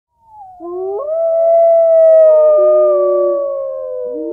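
Several long howls overlapping in a chorus, each gliding slowly in pitch, beginning about half a second in.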